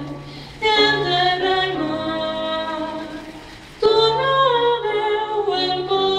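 A woman singing a solo song with piano accompaniment, in two phrases of held, wavering notes. Each phrase enters suddenly, one about half a second in and the other about four seconds in.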